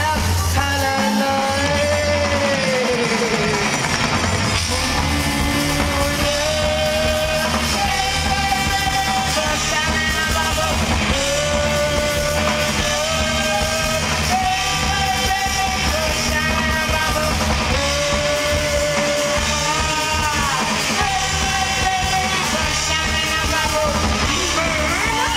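A live rock band playing through a festival PA: a singer holds long notes in phrases that come back about every four seconds, over a steady bass, drums and guitar.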